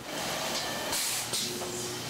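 Food-packaging machinery on an olive production line, making a steady hissing, rushing noise that swells about a second in. Near the end a faint steady hum joins it.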